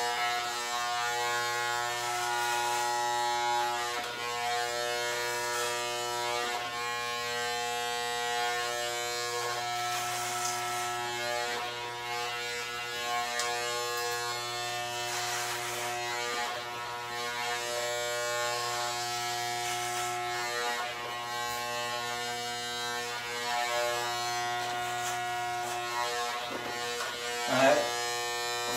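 Corded electric hair clippers fitted with a number-one guard, buzzing steadily as they cut short hair on the side of the head.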